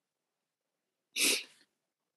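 One short, sharp burst of breath from a person, about a second in and lasting under half a second.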